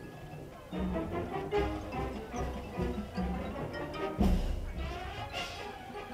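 Marching band of brass and percussion playing. A softer passage gives way to the full band under a second in, and a loud accented hit lands about four seconds in.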